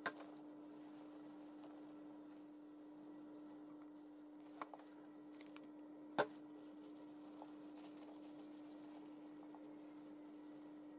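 Quiet handling of a leather bag while conditioner is rubbed into it: faint rubbing with a few sharp clicks or knocks, the loudest about six seconds in, over a steady low hum.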